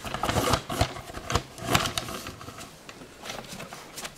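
Irregular clicks, knocks and rustles of handling as the camera is moved and re-aimed, with no steady machine sound.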